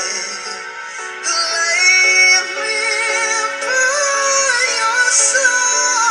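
A male singer's voice in a slow ballad, with long held notes that slide in pitch over backing music; it gets louder about a second in and peaks on a high note about two seconds in.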